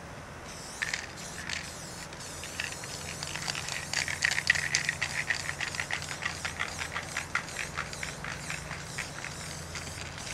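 A spray-paint can: a short hiss of spraying near the start, then the can shaken hard for several seconds, its mixing ball clacking rapidly several times a second.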